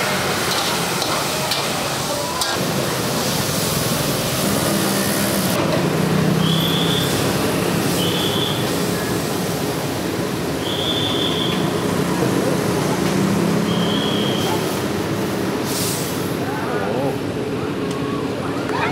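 Steady roar and hiss of a high-flame wok burner with stir-fry sizzle. About five seconds in it gives way to street traffic noise and background voices, with four brief high tones.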